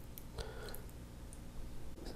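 A thin stream of water trickling faintly from a bottle into a small plastic measuring cup, with a few small clicks.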